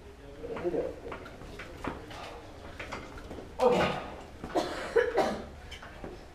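Quiet room with a few short, indistinct human vocal sounds, such as murmurs, grunts or a cough. The loudest come about three and a half seconds in and again around five seconds. No music is playing.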